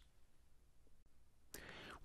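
Near silence: room tone, with a faint breath drawn in near the end.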